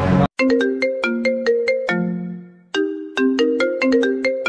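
Mobile phone ringtone: a marimba-like melody of quick struck notes that starts just after a brief cut, pauses on a fading low note about two seconds in, then repeats.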